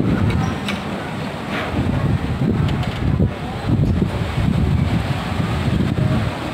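Gusty typhoon wind buffeting the microphone in uneven rumbling surges as the gusts strengthen.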